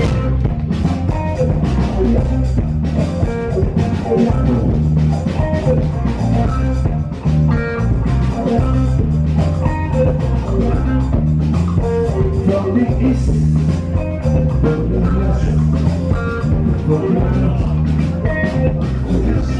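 Live Afrobeat band playing a steady groove: drum kit, congas, electric guitar and bass guitar, loud and full in the bass.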